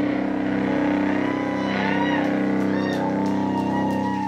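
Live rock band's electric guitars holding one sustained chord that rings out through the amps at the end of a song: a steady drone with a fast, even pulsing.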